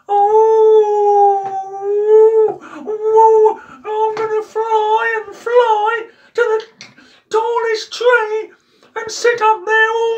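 A high-pitched voice wailing without clear words: one long held note, then a run of shorter, wavering notes broken by short pauses.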